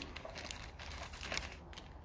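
Clear plastic zip bag crinkling softly as hands handle it, with a few small rustles and clicks.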